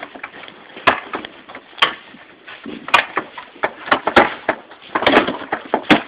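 Wooden barn boards and timbers knocking and clattering as they are handled: sharp, irregular knocks roughly once a second, with lighter clatter in between.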